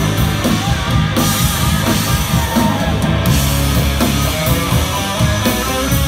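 Live rock band playing an instrumental passage: electric guitar over bass guitar and a drum kit with cymbals, loud and continuous.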